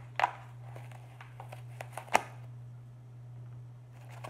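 White packing wrap being handled and pulled off a small glass piece by hand: scattered light crinkles and rustles, with a sharp click just after the start and a louder one about two seconds in. A steady low hum runs underneath.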